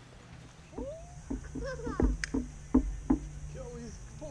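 A small child's wordless sing-song voice, sliding up and down in pitch, with three sharp knocks about halfway through.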